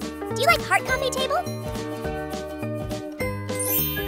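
Upbeat children's background music with a voice-like melody gliding up and down in the first second and a half, then a rising twinkling chime effect shortly before the end.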